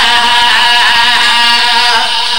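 Men's voices chanting a noha (a Shia lament) loudly through a microphone and PA system, holding one long drawn-out note.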